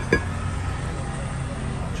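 A single metallic clink with a short ring right at the start as a worn cast-iron brake rotor is shifted by hand on a concrete floor, over a steady low hum.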